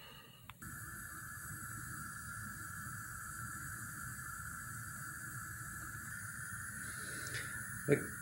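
Gas stove burner running with a steady hiss and a low rumble, starting about half a second in.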